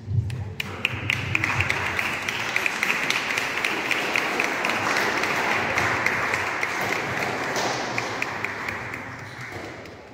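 Congregation applauding, many hands clapping together, starting about half a second in and dying away near the end.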